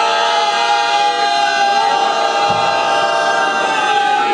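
A man's voice over a microphone and loudspeakers, singing a melodic chant in long, held notes that slide slowly in pitch.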